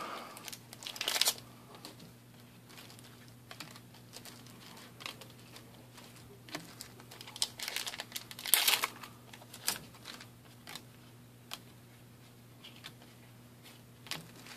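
Trading cards being handled and a foil booster pack wrapper crinkling and tearing open: short scattered bursts of rustling, the loudest about eight and a half seconds in, over a faint steady low hum.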